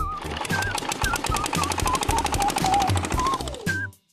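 Cartoon sound effect of a motor scooter riding off: a fast, even putter of engine pulses that falls in pitch and dies away near the end, under light background music.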